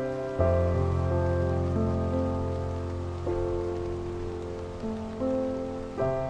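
Slow, soft improvised piano on a sampled grand piano (Spitfire LABS Autograph Grand) played from a digital keyboard: a low bass chord struck about half a second in and held, with single notes added every second or so. A steady rain ambience runs underneath.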